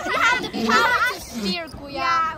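People's voices talking and calling out in lively, high-pitched bursts, with laughter.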